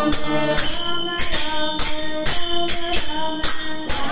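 A group of voices singing a Tamil devotional bhajan together, with a steady percussive beat keeping time.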